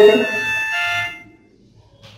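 A man's voice drawing out the last syllable of a word at one steady pitch for about a second, then fading into a brief pause.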